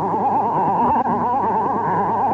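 Hindustani classical male voice singing a fast taan in a tarana, the pitch shaking rapidly up and down in a heavy gamak, over a steady drone.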